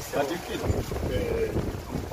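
A man speaking in short phrases, with a steady low rumble of wind on the microphone underneath.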